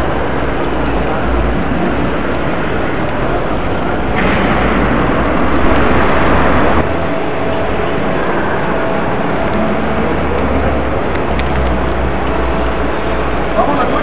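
Steady hall noise with a low rumble and voices in the background; a louder rushing noise starts suddenly about four seconds in and cuts off sharply about three seconds later.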